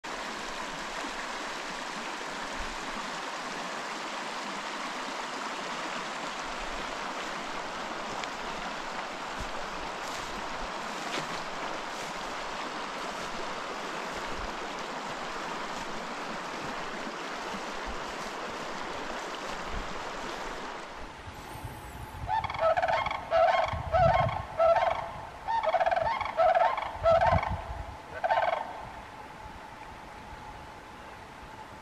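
Shallow creek running over stones, a steady rush of water. About 22 seconds in, sandhill cranes call: a run of about a dozen loud, rolling bugle notes in quick succession over some six seconds.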